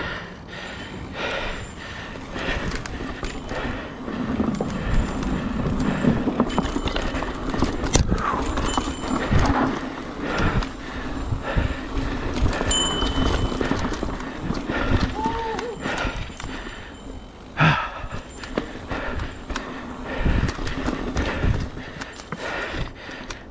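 Mountain bike riding over a rough, leaf-covered dirt trail, with a steady stream of irregular knocks and rattles from the bike as the wheels hit bumps and roots, over the rumble of the tyres on the ground.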